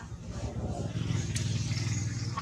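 A motor vehicle's engine running in the background, its low hum swelling about half a second in and then holding steady, with one sharp click near the middle.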